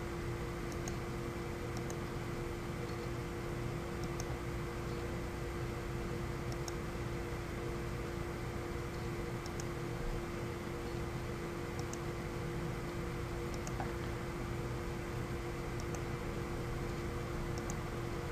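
Steady hum of a computer fan, with a faint mouse click every two seconds or so.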